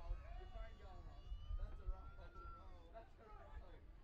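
Distant players' and onlookers' voices calling out across an open field, including one long drawn-out call, with wind rumbling on the microphone.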